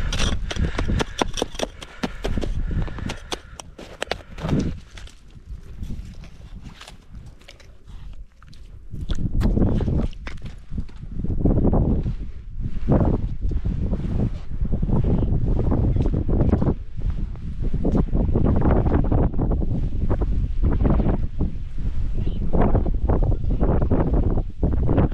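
Wind buffeting the microphone. In the first two seconds there is a quick run of clicks and scrapes as a slotted ice scoop clears slush from an ice-fishing hole, followed by the rustle of line being hauled in by hand.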